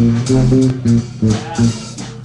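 Live blues band playing: electric guitar and electric bass work through a riff of short, clipped notes with gaps between them.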